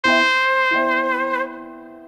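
Instrumental jazz: a brass lead holds one long note over sustained chords. The note wavers near its end and breaks off about one and a half seconds in, while the chords ring on and fade.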